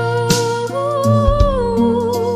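A woman singing a long, wordless held note with vibrato, which rises a step about a third of the way in and falls back, over a backing of bass and accompaniment.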